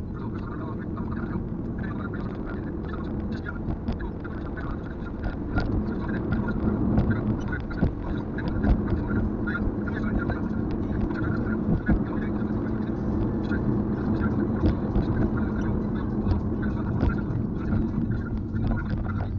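Steady road and engine noise inside a moving Kia Carens, picked up by a dashboard camera, with a voice heard over it.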